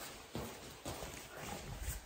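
About five soft, irregular footfalls and knocks on a foam-matted floor.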